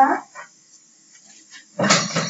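A man speaking Hindi: a drawn-out word trails off, then a quiet pause, and speech starts again near the end.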